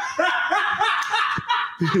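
Laughter close to a microphone: a run of short, breathy laughs.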